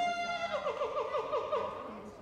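A high-pitched human voice holds one note, then breaks about half a second in into a quick warbling run of about six rises a second. It ends just before the end.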